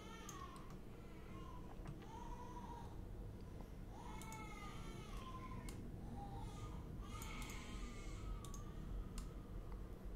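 Scattered computer mouse clicks over a steady low hum, with a high-pitched call that rises and falls repeated every second or two in the background.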